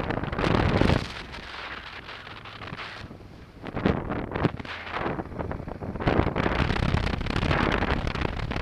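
Wind buffeting the microphone of a helmet camera on a moving motorcycle. It comes in gusts, eases off for a couple of seconds about a second in, then picks up again.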